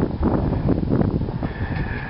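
Wind buffeting the microphone outdoors: an irregular low rumble, with a faint steady high whine coming in about a second and a half in.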